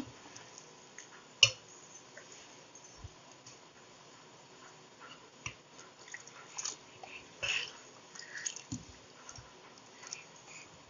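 A spoon stirring a thick batter in a stainless steel bowl: scattered wet squelches and light scrapes and knocks of the spoon against the steel, with the sharpest clink about one and a half seconds in.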